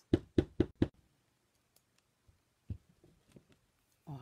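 A clear acrylic stamp block knocking four times in quick succession, then a few fainter taps, as a rubber butterfly stamp is inked and pressed onto cardstock.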